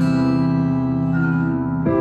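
Acoustic guitar sounding a C and ringing on. Another note or chord is struck just before the end.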